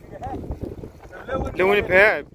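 A person's loud voiced call, its pitch rising and falling, in the second half. Wind buffets the microphone throughout.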